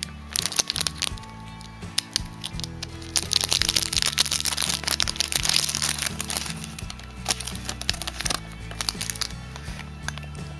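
Close-up crinkling and clicking of packaging being handled, densest in the middle few seconds, over steady background music.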